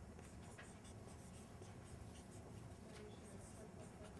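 Faint scratching of writing on a board, in short irregular strokes over quiet room tone.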